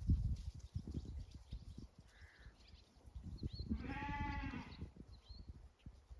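A Zwartbles lamb bleats once, a single call of about a second a little past halfway, over a low, uneven rumble on the microphone.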